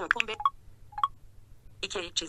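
Two short electronic beeps from an iPhone's VoiceOver screen reader, about half a second and a second in, between bits of speech.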